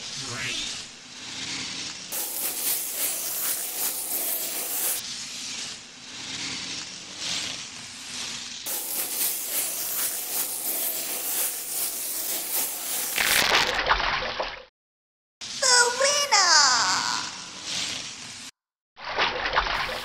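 Cartoon ice-skating sound effects: a long run of scraping, swishing skate noise, then a loud crash about two-thirds of the way through as the ice breaks. Short splashing sounds and a falling glide follow after brief gaps.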